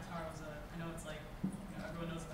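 Faint, distant speech from an audience member answering off-microphone, with a single sharp knock about one and a half seconds in.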